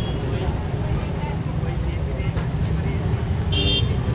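Outdoor crowd background: scattered voices over a steady low rumble. A short high-pitched tone sounds near the end.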